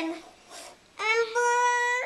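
A toddler's voice holding one high note: it rises slightly, then stays steady for about a second, starting about a second in.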